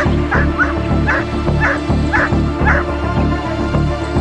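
A protection-trained working dog barking in a quick series of about seven short barks, roughly two a second, over background music with a steady beat.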